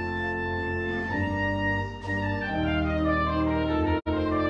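Organ playing a slow prelude: sustained held chords that change every second or so. The sound cuts out briefly at the very end.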